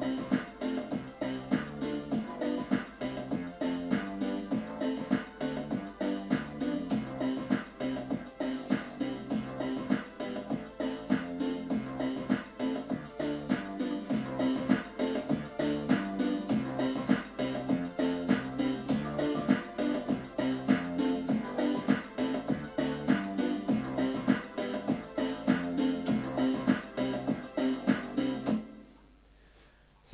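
Yamaha PSR-270 portable keyboard playing a chord accompaniment with a steady beat, the chords changing as single keys are pressed under its EZ chord guide feature. The music stops abruptly near the end.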